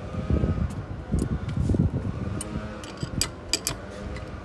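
A low rumble, with a series of sharp metallic clinks in the last second and a half: a steel spanner knocking against the metal trailer hitch arm of a small electric bike.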